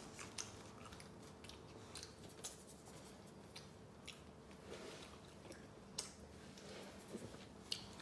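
Faint close-up chewing of a beef and vegetable pita wrap: soft wet mouth clicks and small crunches scattered irregularly throughout, with a few sharper clicks standing out.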